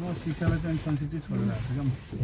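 A person's voice talking in short phrases inside a car, with faint road noise beneath.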